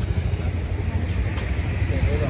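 Steady low rumble of outdoor street background noise, with a single sharp click about one and a half seconds in and a faint voice near the end.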